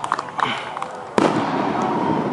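Aerial firework shell bursting with one sharp bang about a second in, followed by a rolling echo.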